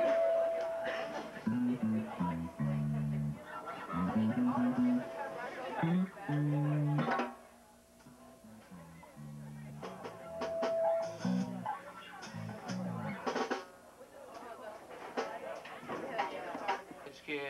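Electric bass guitar through an amplifier, plucking a loose run of low held notes between songs, with a short pause about halfway. A brief steady higher tone sounds near the start and again about ten seconds in.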